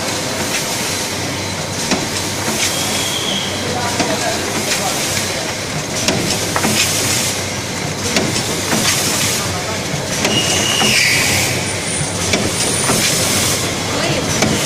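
HF-BFS automatic premade-pouch filling and sealing machine running: a steady mechanical clatter with air hissing and repeated sharp clicks as its grippers and stations cycle.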